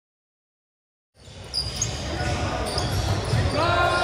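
Silence for about the first second, then indoor basketball game sound: balls bouncing on a hardwood court, with players' voices.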